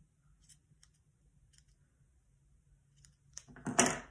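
Small scissors snipping the loose ends of a twine tassel: a few faint, short snips scattered through the quiet, ahead of a spoken word near the end.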